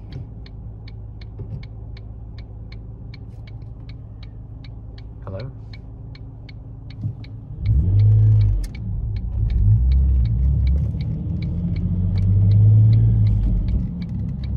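Ford Mondeo ST220's 3.0 V6 with Milltek exhaust, heard from inside the cabin, idling low under the steady ticking of the turn-signal relay, nearly three ticks a second. About seven and a half seconds in, the engine pulls away and runs much louder through the turn, the indicator still ticking.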